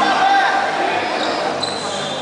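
Raised voices calling out in a large, echoing sports hall, loudest in the first second and fading off after it.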